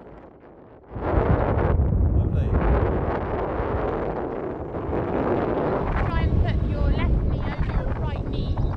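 Wind buffeting a mobile phone's unshielded microphone in paragliding flight: a loud low rumble that starts about a second in and drowns out nearly everything, with a voice showing through near the end. The wind noise is completely loud and intrusive.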